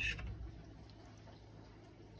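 Mostly quiet room tone with a low steady hum; right at the start, a brief faint clink of a metal fork against the metal cake pan as it lifts a resin part out of the water.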